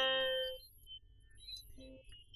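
A song playing from a mobile phone as its ringtone: a held sung note fades out about half a second in, followed by a few faint short notes.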